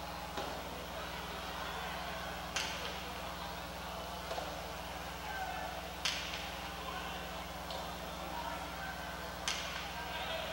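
Jai-alai pelota cracking against the front wall during a rally, three sharp strikes about three and a half seconds apart, each with a short echo, with fainter knocks between them.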